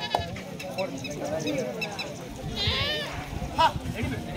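Voices of players and spectators at a kabaddi match: the raider's chant and shouting, with a shrill warbling cry about two and a half seconds in and a short loud shout near the end.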